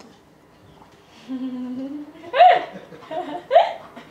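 A woman's short hum, then two brief laughs that rise in pitch, about a second apart.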